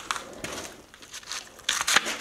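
Stiff sheets of old X-ray film rustling and crackling as they are picked up and slid over one another, with a louder flurry near the end.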